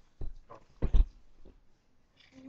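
Two dull thumps, the first a fraction of a second in and the louder one about a second in.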